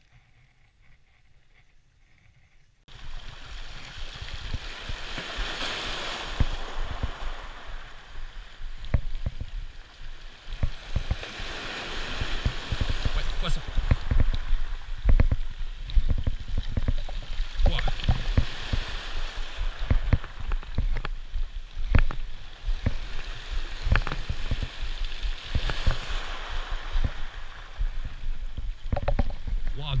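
Small sea waves washing and foaming over shoreline rocks, the noise swelling and easing every several seconds, under a heavy low rumble of wind on the microphone. It is faint for the first three seconds, then starts abruptly.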